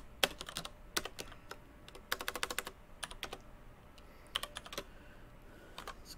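Typing on a computer keyboard: short bursts of keystrokes separated by pauses, with a quick run of keys about two seconds in.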